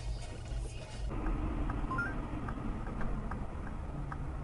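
Low steady rumble of a car on the road. About a second in the sound changes abruptly, and a light regular ticking starts, about two to three ticks a second, with a short two-note beep near the middle.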